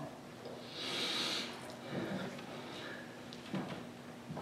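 A soft breathy exhale close to a handheld microphone about a second in, lasting under a second, followed by a few faint short sounds in a quiet room.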